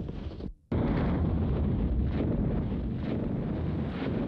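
A steady, low rumbling roar that drops out briefly about half a second in, then carries on at the same level.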